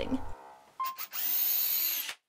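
Handheld electric drill boring the nail hole into a walnut handle. A couple of short blips are followed by about a second of steady, whining running, which stops abruptly.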